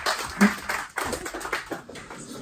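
Scattered applause from a small standing crowd, dense at first and thinning to a few claps by the end.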